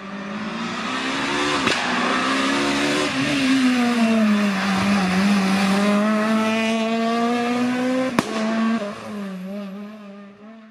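Renault Clio rally car's four-cylinder engine driven hard past at close range. The note climbs as the car approaches, sags as it slows for the bend in the middle, then climbs again as it accelerates away. There are two sharp cracks, one early and one near the end.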